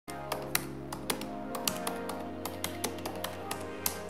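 Intro music with a sustained chord, overlaid by a keyboard-typing sound effect: irregular clicks about three or four a second.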